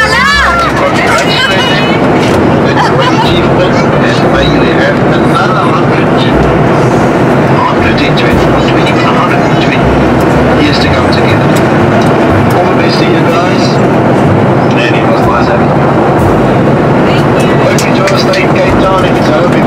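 Loud, steady airliner cabin noise, the engines' constant rush, mixed with an unclear babble of voices.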